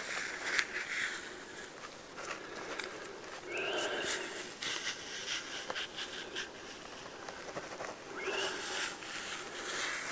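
Bark being pried and worked loose from a standing conifer trunk with a hand tool: scattered small scrapes, cracks and ticks. There are a couple of brief higher squeaks, about four seconds in and again near the end.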